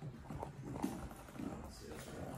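German shepherd's claws and paws tapping and knocking as it steps about on a raised dog cot over a hardwood floor, a few light taps with the sharpest just under a second in.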